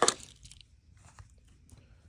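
A Hot Wheels blister pack being cracked open by hand: a sharp crunch as the pack gives way, followed by faint crinkles and ticks of the packaging.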